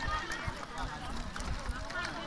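Several people talking at once, their voices overlapping in a busy outdoor chatter, with a few light knocks.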